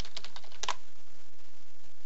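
Typing on a computer keyboard: a quick run of about seven keystrokes in the first second, the last one the loudest, then the typing stops.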